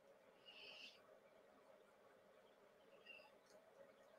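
Near silence: room tone with two faint, brief high scratchy sounds, one about half a second in and a smaller one near three seconds.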